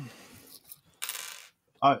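A brief hiss lasting about half a second, about a second in, between a man's words; his voice trails off at the start and he begins speaking again near the end.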